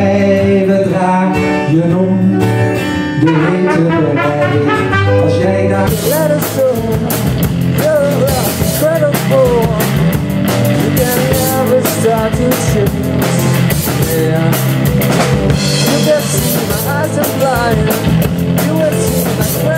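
Live music: a man sings to acoustic guitar, then about six seconds in it cuts to a rock band, with a male singer over electric guitar, bass guitar and a drum kit.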